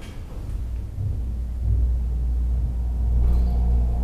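A Schindler 330A roped hydraulic elevator starting up: the pump motor sets in with a low hum that builds about a second in and then holds steady as the car begins to rise.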